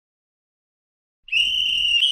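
Near silence, then a single loud, shrill whistle blast starting just over a second in: one steady high tone, rising very slightly, that holds for about a second.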